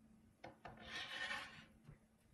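Two light taps as a red sheet is set down on a black board, then a soft rubbing swish lasting about a second as the sheet is slid and smoothed flat with the hands.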